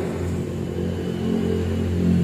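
A steady low mechanical rumble, like an engine running nearby, growing slightly louder over the two seconds.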